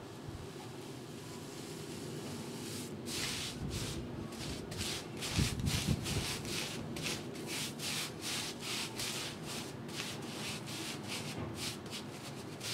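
Four-inch paintbrush scrubbing masonry paint into a rough rendered wall: bristles rasping over the textured render in quick back-and-forth strokes, about three a second, starting about three seconds in.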